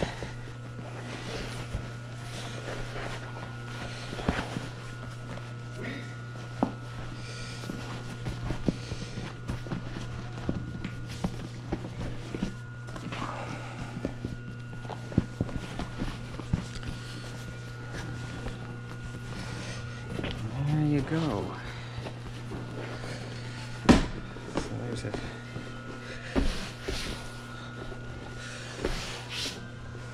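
Leather-and-vinyl seat cover rustling and crinkling as it is worked by hand and turned right side out. Scattered soft taps run through it, with one sharper knock late on, over a steady low hum.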